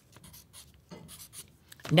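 Felt-tip marker writing numbers on paper: a series of short, light pen strokes.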